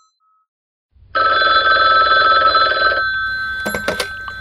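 A telephone ringing once: one steady ring of about two seconds that starts after a second of silence. A couple of short clicks follow near the end.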